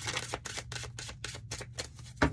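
Tarot cards being shuffled: a rapid, irregular run of crisp card clicks, several a second.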